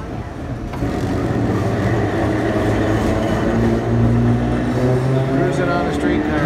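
Engine and road noise of a moving vehicle heard from inside the cabin, a steady low drone, with indistinct talking over it toward the end.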